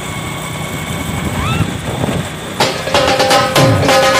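Steady vehicle engine and road noise while travelling, then background music with sharp drum strikes and held notes comes in about two-thirds of the way through.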